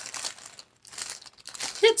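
Thin plastic packaging bag crinkling as it is handled, in irregular rustles with a brief pause partway through.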